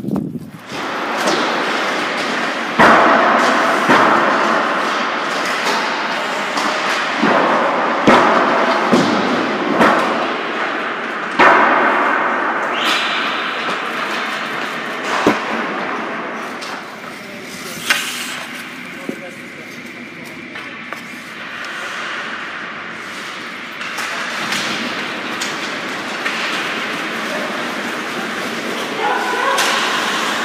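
Ice hockey practice on an indoor rink: skate blades scraping the ice, a string of sharp cracks from sticks and pucks striking, and indistinct shouting voices.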